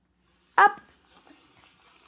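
One short, high-pitched vocal 'up' about half a second in, a quick sing-song call to a baby being picked up, followed by faint rustling as she is lifted.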